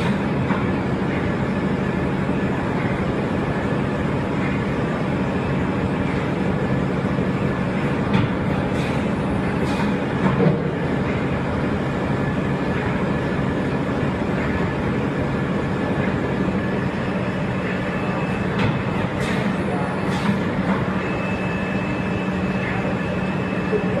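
Steady hum of a flat UV curing machine running on a factory floor, its conveyor and lamp fans going, with a few short knocks about a third of the way in and again later.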